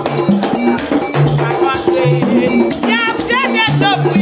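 Haitian Vodou ceremonial music: a metal bell struck in a fast, steady rhythm over pitched drums and a shaken rattle. A high, wavering sung line joins about three seconds in.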